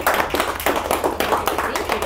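Audience applauding: a dense, irregular run of many hand claps.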